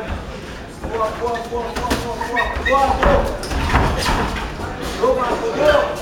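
Several voices shouting over one another, with several sharp thuds of kicks and punches landing, the strongest about three and four seconds in.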